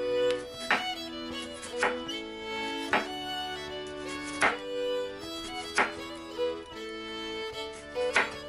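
A chef's knife cutting through cucumber and striking a wooden cutting board, about five single chops spaced a second or so apart, over background music.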